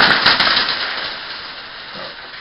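A big load of coins spilling and clattering down in a dense shower of clinks, loudest at the start and thinning out as the last coins settle.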